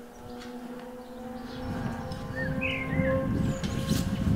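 A horse eating hard feed from a plastic tub: a low noise that grows louder through the second half. Background music with held notes runs underneath, and a bird chirps twice past the middle.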